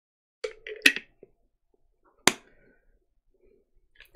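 Short sounds of tasting from and handling a plastic shaker cup: a brief mouth sound with a click just under a second in, then a single sharp click or knock a little over two seconds in.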